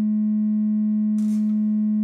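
Korg ARP 2600 FS oscillator (VCO2) sounding its sine-wave output as one steady, unchanging tone at a single pitch of about 210 Hz, nearly pure with only faint overtones.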